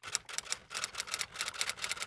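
Typewriter-style typing sound effect: rapid key clicks, about ten a second.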